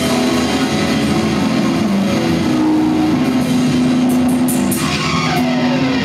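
Live hardcore punk band playing loud: electric guitar through Marshall amplifiers with a drum kit, the guitar holding long notes.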